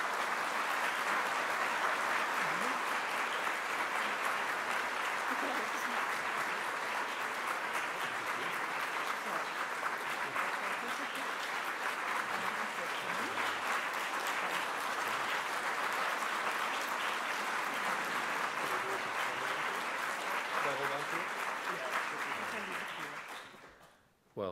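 Audience applauding steadily, a dense, even clatter of many hands clapping, fading away over the last couple of seconds.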